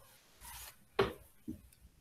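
Handling noise in a small room: a brief rustle, then two knocks about half a second apart, the first the louder.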